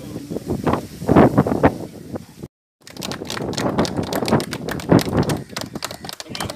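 Several people's voices calling out, then after a brief gap about two and a half seconds in, a small group clapping hands.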